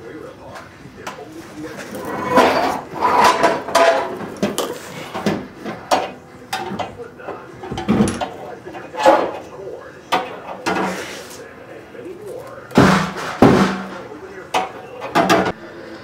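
Irregular metal clanks and knocks from hand tools and hardware as a car's fuel-tank strap is undone and the tank is brought down from underneath, with a louder pair of knocks near the end.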